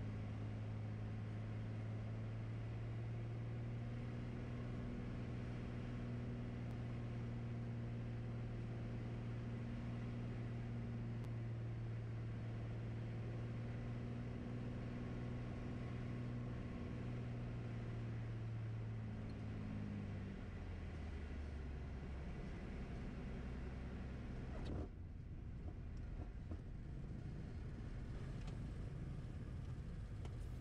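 Beechcraft A36 Bonanza's piston engine droning steadily at low power through the landing, with a single low hum. About two-thirds of the way through, its pitch drops lower as the engine comes back to idle on the rollout.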